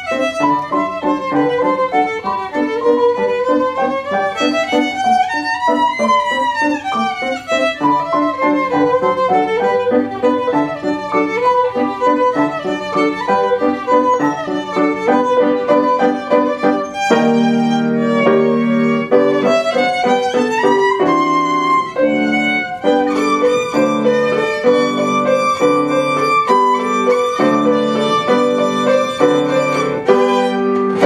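Violin and piano playing a classical duet: the violin carries a melody of sliding, wavering notes over piano accompaniment. A little past halfway the lower accompaniment grows fuller and louder beneath the violin.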